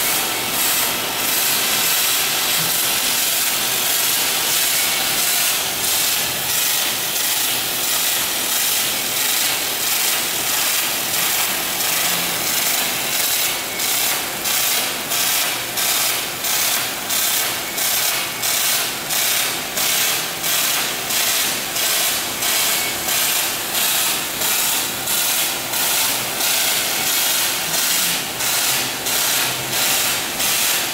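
Robotic MIG welding arc running on an alloy frame: a steady hiss that, from about halfway, pulses evenly about one and a half times a second.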